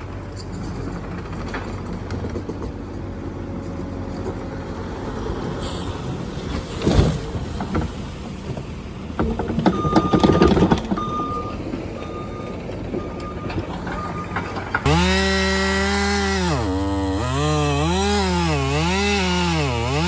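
Compact track loader's engine running while its bucket tips a load of gravel with a loud rush, its backup alarm beeping steadily for a few seconds. About three-quarters of the way through, a chainsaw takes over, louder, its engine pitch dipping and climbing again as it cuts into a log.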